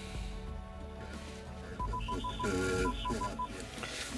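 Car radio coming on through the car's speakers about two seconds in, playing music with a voice, over a low steady hum. Two quick runs of short, even, high beeps come with it, about five and then four.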